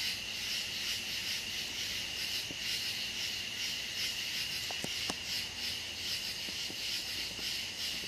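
Steady high-pitched chorus of night insects, with a few faint clicks about halfway through.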